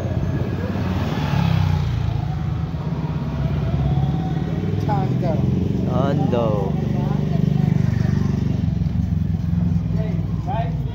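Street traffic: a steady low engine rumble from passing motorcycles and cars, with voices heard briefly about halfway through.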